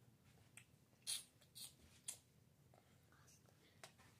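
Near silence, broken about a second in by three short, soft hissy mouth noises about half a second apart, from a toddler sucking and chewing a sour rainbow candy strip.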